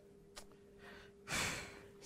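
A man's audible breath, like a sigh, about one and a half seconds in, taken in a pause between spoken phrases. A soft click comes near the start, and a faint steady hum runs underneath.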